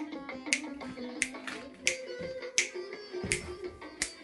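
An Azerbaijani song playing from an old Yu-Ma-Tu portable radio cassette player, with sharp clicks keeping the beat about every two-thirds of a second over the music.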